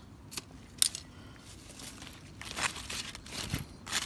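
Large green leaves and newspaper rustling and crinkling as a hand arranges them in a wicker basket, with a sharp click just under a second in and busier rustling in the second half.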